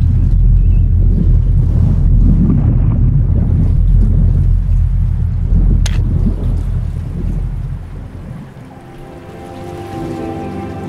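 A loud, deep rumble that fades away over the last couple of seconds, with a single sharp click about six seconds in; soft music with held tones comes back near the end.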